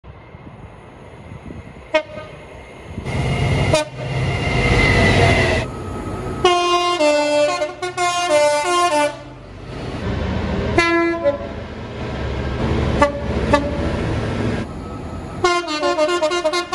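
Diesel freight locomotive horns stepping back and forth between two notes, over the rumble of the engine and passing wagons. A long horn sequence comes about halfway in, a short blast comes around eleven seconds, and another rapid two-note sequence starts near the end.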